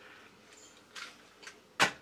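3D-printed plastic walking robot set down on a wooden tabletop: quiet light handling, then a single sharp knock near the end as its feet land.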